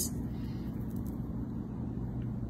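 Steady low background hum and rumble, with no distinct event; the slow pour of thick batter adds nothing that stands out.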